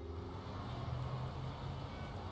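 Steady low rumble of outdoor background noise, of the kind made by road traffic. It follows a soft music track that cuts off at the very start.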